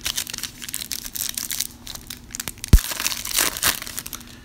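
Foil wrapper of a baseball card pack being torn open and crinkled, a dense run of crackling, with one dull thump a little before three seconds in.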